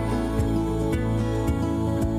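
Background music: sustained chords over a deep bass, with a light beat about every half second.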